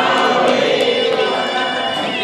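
Many voices singing a Sanskrit devotional chant together, holding long sung notes.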